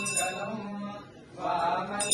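A voice chanting mantras during a temple abhishekam, dipping briefly about a second in and then resuming. A hand bell's ringing breaks off right at the start.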